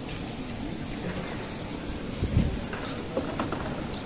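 Outdoor crowd ambience of pilgrims walking across an open courtyard, with faint indistinct voices. A short low bump on the microphone comes a little past halfway.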